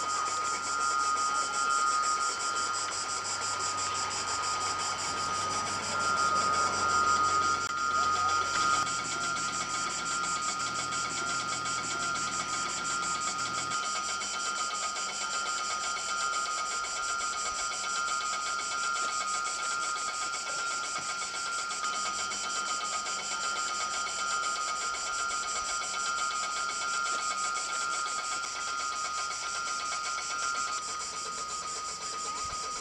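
Electric station bell ringing continuously at a railway passing point, a steady metallic ringing that does not break. Such a bell warns of an approaching train.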